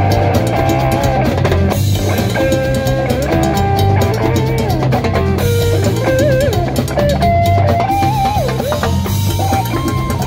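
Live Latin rock band: an electric lead guitar solos in long, sustained notes with bends and vibrato over a drum kit, congas and bass.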